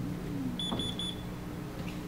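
Three short, high-pitched electronic beeps in quick even succession, over a faint steady hum.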